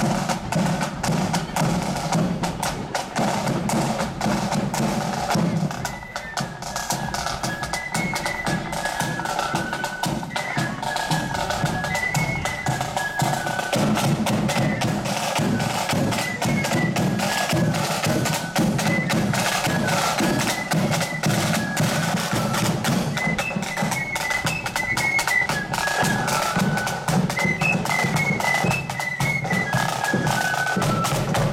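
Marching flute band: side drums and a bass drum keeping a steady march beat, with the flutes coming in on a melody about six seconds in.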